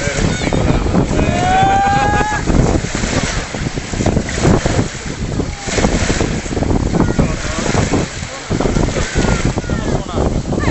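Wind buffeting the microphone in gusts over choppy sea water washing, loud throughout. About a second in, a short high-pitched call rises briefly over the wind.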